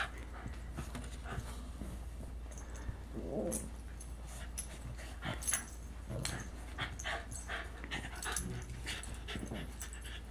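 A senior Shiba Inu and a puppy play-fighting: short dog vocal sounds and scuffling, many brief sharp sounds, and one longer pitched vocal sound about three seconds in.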